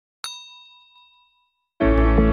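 A single bright bell-like ding from a subscribe-button animation's notification-bell sound effect: one strike that rings and fades over about a second and a half. Music starts just before the end.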